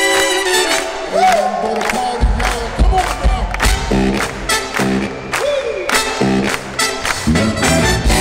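Live funk band playing loud through the PA, heard from among the audience: a held chord at first, then from about two seconds in bass and drums come in under short, stop-start chord stabs. Audience cheering along.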